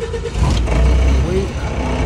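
Forklift running and lifting a load, the low engine and hydraulic sound growing much louder about half a second in as the forks take the weight.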